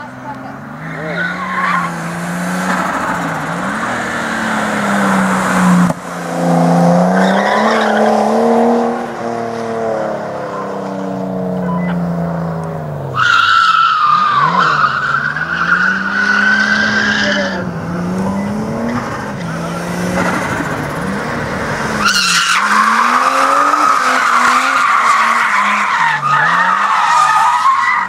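Nissan R32 Skyline driven hard around an autocross course: the engine revs rise and fall, and the tyres squeal in long stretches while the car slides, from about halfway through and again through the last few seconds.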